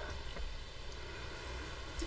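Quiet room tone: a faint, steady low hum with no distinct sounds.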